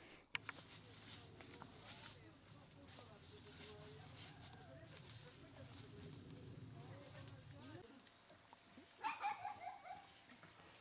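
Faint outdoor background, then about nine seconds in a dog barking several times in quick succession.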